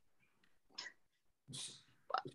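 Near silence: faint room tone over a video call, broken by two brief soft noises, one a little before the middle and a slightly longer one near the end.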